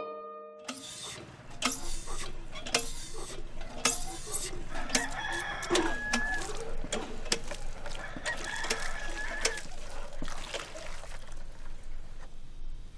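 Rooster crowing twice, with chickens clucking around it. Sharp knocks and clanks come roughly once a second from a hand-operated well pump being worked.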